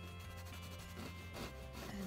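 Bristle brush scrubbing thin oil paint onto canvas, a soft rubbing, over quiet background music.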